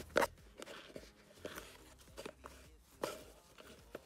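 Faint unboxing handling sounds: a cardboard gift box being opened and a cotton dust bag taken out, with a few scattered light knocks and rustles.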